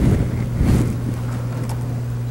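Steady low electrical hum under room noise, with a faint murmured voice in the first second.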